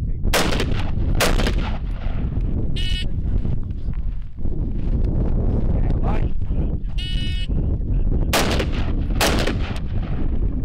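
AR-15-style carbine shots in pairs: two shots about a second apart near the start and two more near the end. Between them come two short electronic beeps of a shot timer, the start signal after "stand by".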